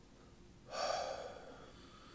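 One audible breath, a person breathing in or out sharply, lasting under a second and starting a little after the first half-second.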